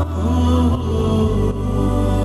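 Devotional Shia chanting (munajat): a single voice gliding through a slow melodic line over held low drone tones that change step by step.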